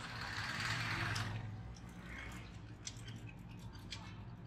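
Street traffic noise: a motorcycle engine passing close, swelling and fading over the first second and a half, then a few scattered clicks and knocks from the street.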